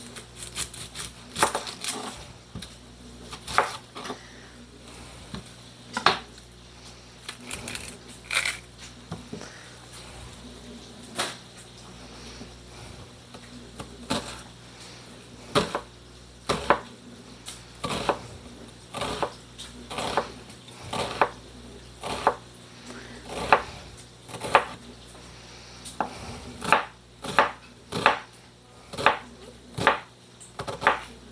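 Kitchen knife chopping an onion on a plastic cutting board: sharp, uneven taps of the blade against the board in quick runs, with a short lull partway through and a faster run near the end.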